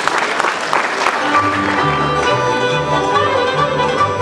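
Audience applause fading out in the first second, then a Hutsul folk band strikes up: fiddles playing over a double bass line that steps between notes in a steady beat.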